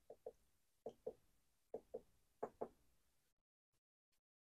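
Faint clicks of a front-panel push button on an FG-200 DDS function generator, pressed four times, each press a quick double click, stepping through the waveform settings back to sine.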